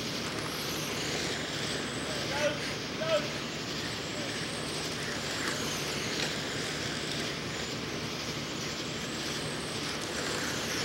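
Electric 1/10-scale RC dirt late-model cars running laps on a clay oval, a steady noisy hum with faint voices behind it. Two brief louder chirps come about two and a half and three seconds in.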